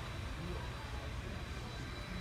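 Steady background hum of a large store's interior ventilation, with a faint thin high tone running through it and nothing standing out.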